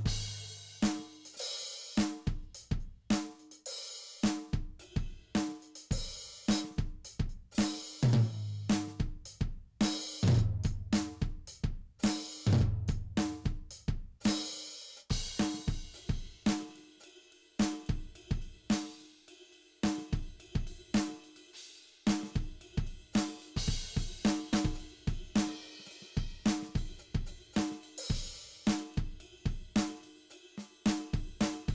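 Simmons SD1250 electronic drum kit playing its heavy rock drum preset, heard direct from the module with no EQ: a steady kick, snare and hi-hat groove with cymbals, and a run of deep tom hits about eight to thirteen seconds in.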